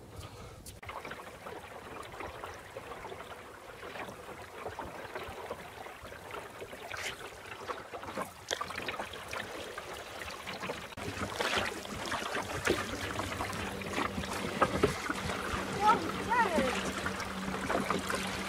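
Water splashing and trickling against the hull of a small wooden sailing dinghy under way, with scattered light knocks, growing louder in the second half. A low steady hum joins about two-thirds of the way in.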